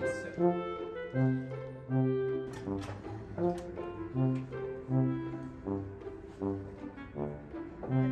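Background music led by low brass instruments playing a bouncy tune of short, detached notes.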